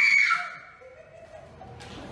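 A woman's high-pitched scream of fright, loudest in the first half second and then trailing off.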